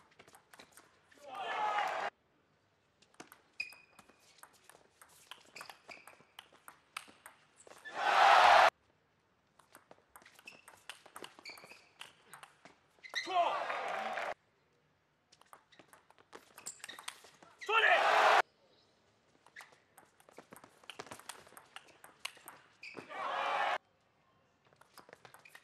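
Table tennis rallies: the ball clicking back and forth off the rubber paddles and the table. Five times, a rally ends in a loud burst of shouting and crowd cheering that cuts off abruptly.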